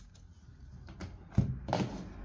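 A tarot card deck being handled and set down on a cloth-covered table: a quiet stretch, then a few short taps and knocks in the second half, the sharpest about one and a half seconds in.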